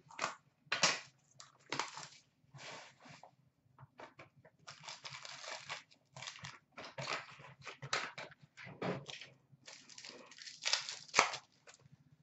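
Plastic wrapping crinkling and tearing in a run of short, irregular rustles as a box of trading cards is unwrapped and its pack torn open.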